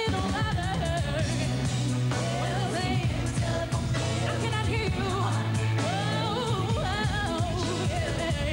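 Female R&B vocal group singing live with a band, the voices sliding through wavering runs over a steady, sustained bass line.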